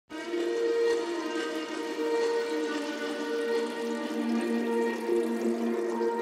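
Intro music: layered, sustained notes that change every half second to a second, over a soft rushing wash, starting the instant the video begins.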